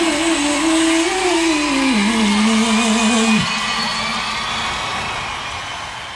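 A female singer's voice holding a long final note that drops in pitch about two seconds in and breaks off about halfway through. The crowd's noise carries on under it and fades out toward the end.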